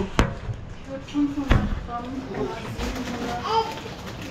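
Two sharp knocks from handling things at a kitchen counter, one just after the start and a duller one about a second and a half in, with quiet voices talking in the background.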